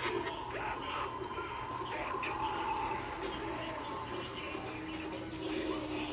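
Faint, indistinct voices of people talking in the background, with no clear words.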